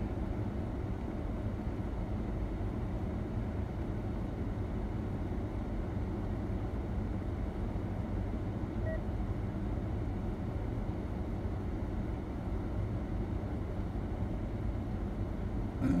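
Steady low rumble of an idling car, heard from inside its cabin.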